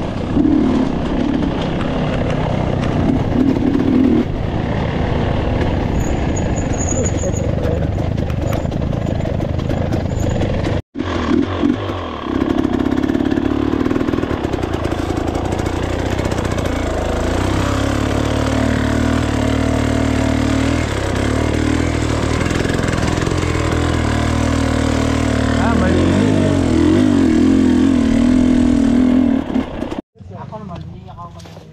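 Dirt bike engine running at low to moderate revs while the bike is ridden through a shallow river, the engine note shifting up and down. The sound cuts out for an instant about eleven seconds in.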